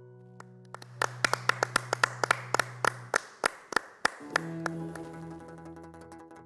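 A quick, uneven run of sharp hand claps, several a second, for about three seconds, over a fading held low note. Then, about four seconds in, a Cretan folk band of lyra and lutes starts playing again.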